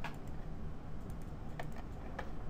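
A few sharp clicks of computer input, one at the start and two close together near the end, over a steady low hum.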